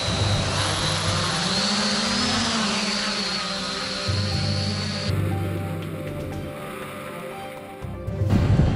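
A small quadcopter's electric motors and propellers spinning up with a high whine as it lifts off and flies, with background music. About five seconds in, the sound changes abruptly and turns duller.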